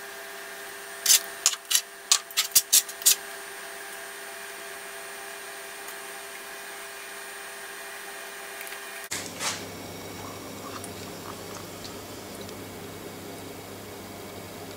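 Kitchenware handled on a metal baking tray: a quick run of about eight sharp clicks and taps about a second in, over a steady faint hum. After a sudden change in the background tone about nine seconds in come two more taps.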